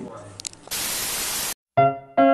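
A burst of even white-noise static, just under a second long, that starts and stops abruptly and cuts to dead silence. Piano music starts near the end.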